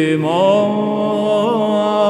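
Byzantine chant in plagal first mode: a male cantor sings a melismatic line, a new note rising in just after the start and then held, with quick ornamental turns on the held note.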